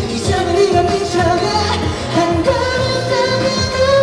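A male singer's voice over a K-pop backing track with a steady drum beat.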